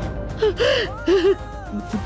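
A woman crying, with two short gasping sobs about half a second and a second in. Dramatic background music plays with held tones that slide downward.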